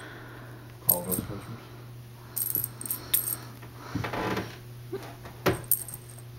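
A small jingle bell jingling in short bursts, about a second in, again around two and a half to three seconds, and near the end, as a kitten bats and leaps at a dangling toy, with a few light knocks and scuffles.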